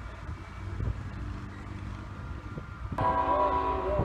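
An approaching freight diesel locomotive rumbles low, and about three seconds in its air horn starts sounding a steady, loud chord.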